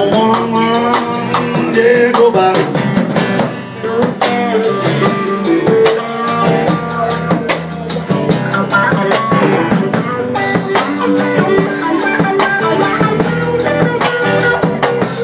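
Live band playing an instrumental stretch of a reggae song: electric guitar over a steady drum-kit beat with percussion.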